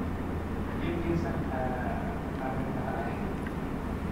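Faint, indistinct voices murmuring over a steady low hum of room noise.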